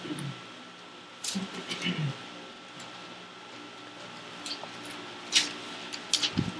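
Pages of a Bible being turned: a few soft paper rustles, with a faint murmured word between about one and two seconds in, over a faint steady electrical whine.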